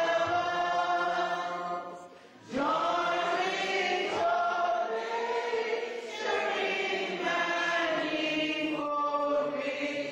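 A church congregation singing together in long, held phrases, with a brief break for breath about two seconds in.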